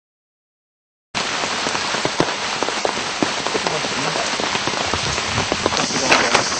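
Steady rushing noise with many scattered crackles and ticks, cutting in suddenly about a second in after dead silence.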